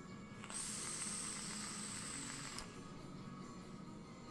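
A breathy hiss of rushing air with a thin high whistle, lasting about two seconds and cutting off sharply: a large cloud of vapour blown out at close range after a hit from a sub-ohm vape.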